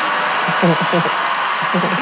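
Large audience applauding and cheering, steady throughout, with short stretches of voice over it about half a second in and near the end.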